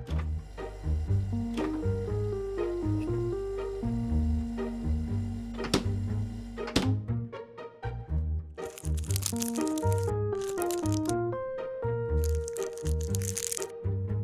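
Light background music with a plucked melody over a bass line throughout. In the second half, three bursts of crinkling plastic as cling film is peeled off a small tray of raw catfish fillet.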